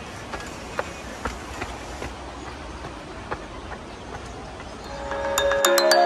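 Steady outdoor noise with a low rumble and a few light taps, giving way about five seconds in to louder background music, a melody of short struck mallet-like notes.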